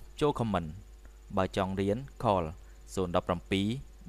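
Speech: a man talking in Khmer in short phrases with brief pauses, over a faint steady high-pitched tone.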